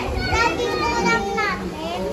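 A young child's high-pitched voice calling out, without clear words, among other children's voices.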